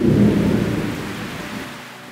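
Heavy rain pouring off a corrugated metal roof, with a low rumble of thunder that starts suddenly, is loudest at first and fades away.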